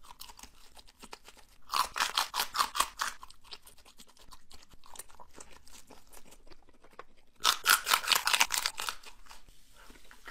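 Close-up chewing and biting of breaded boneless chicken wings, in two spells of rapid crunching: one about two seconds in and another about three-quarters of the way through, with quieter chewing between them.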